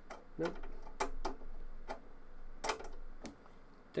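A small screwdriver and its metal Torx bits clicking, about six sharp separate clicks spread over a few seconds, as different bit sizes are tried and swapped for the screw.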